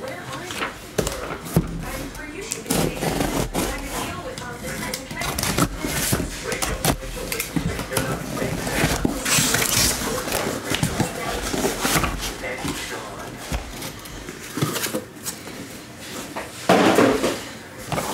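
A corrugated cardboard shipping case being opened and unpacked by hand: irregular scrapes, knocks and rustling of cardboard, with a long tearing hiss about nine seconds in, and the boxes inside being pulled out and set down near the end.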